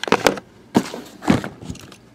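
Handling noise from a cardboard card case and the camera being moved: three short clusters of knocks and scuffs, about half a second apart.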